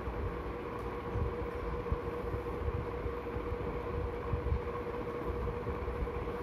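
A steady low drone with a faint held tone running through it, and irregular low rumbles close to the microphone.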